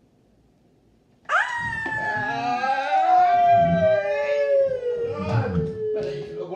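A person's long, high howling yell, starting suddenly about a second in and sliding slowly down in pitch for about five seconds: a reaction to the burn of a very spicy drink.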